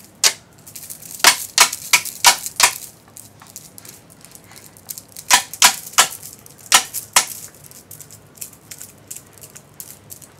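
A string of sharp, irregularly spaced clicks: about six in the first three seconds, then about five more between five and seven seconds in.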